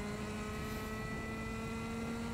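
Rotax two-stroke kart engine running at high revs, its pitch climbing slowly and steadily as the kart accelerates, heard from the onboard camera mounted on the kart.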